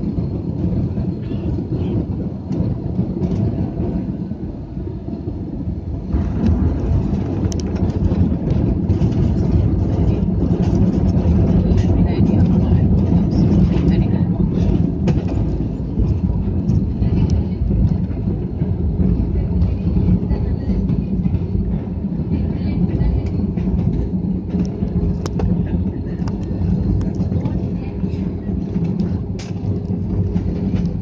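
Jet airliner landing, heard inside the cabin: a steady low rumble that grows suddenly louder and rougher about six seconds in as the plane touches down. It stays loud as it rolls along the runway, easing slightly in the second half.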